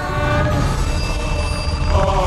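Background music: a held chord of steady tones over a low rumble.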